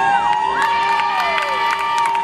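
Audience cheering and screaming in high voices, with several long rising and falling screams and a few claps.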